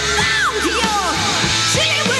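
Live hard rock trio playing, with a high, wailing male vocal sliding up and down in pitch over electric bass, guitar and drums.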